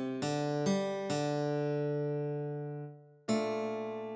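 Tab-playback guitar playing a melody one note at a time at half speed: three quick plucked notes, then a long held note that fades out near three seconds in, and a fresh note just after.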